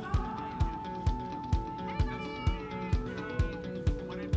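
Background music with a steady kick-drum beat, a little over two beats a second, and a long held note through the first half.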